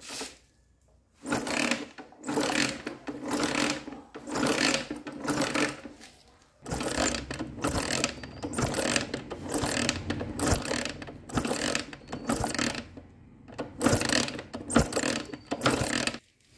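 Honda XL125S single-cylinder engine being kicked over again and again with the spark plug out, the kick-start gears and ratchet whirring with each stroke, in three runs with short pauses between. The plug lies grounded on the cylinder head, so this is a check for spark.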